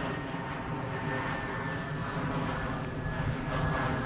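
Steady drone of an aircraft passing overhead, holding at an even level with a faint steady whine on top.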